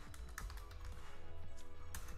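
Typing on a computer keyboard: a few scattered soft keystrokes, with quiet background music underneath.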